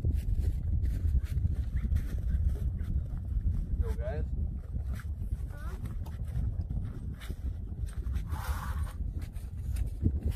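Steady low wind rumble on the microphone, with faint, indistinct voices now and then and a short hiss near the end.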